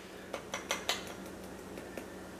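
Metal tablespoon clicking against a spice container as onion powder is tapped out into it: a handful of light clicks in the first second, then quieter.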